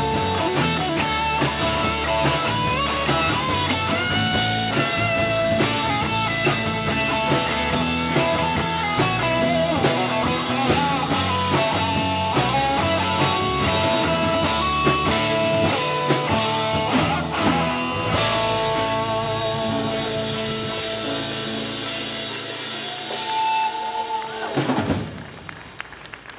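Live rock band playing: electric guitars, bass guitar, drum kit and tambourine. About 18 seconds in the beat stops and the final chord rings out and slowly fades, with a brief last flourish just before the end.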